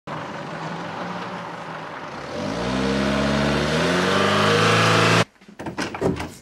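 A motor vehicle engine running, then from about two and a half seconds in accelerating, its pitch rising steadily as it grows louder, until it cuts off suddenly a little after five seconds.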